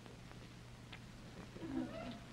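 A hushed television studio audience over a steady faint hum, with scattered faint murmurs and small ticks. A brief faint voice sounds near the end.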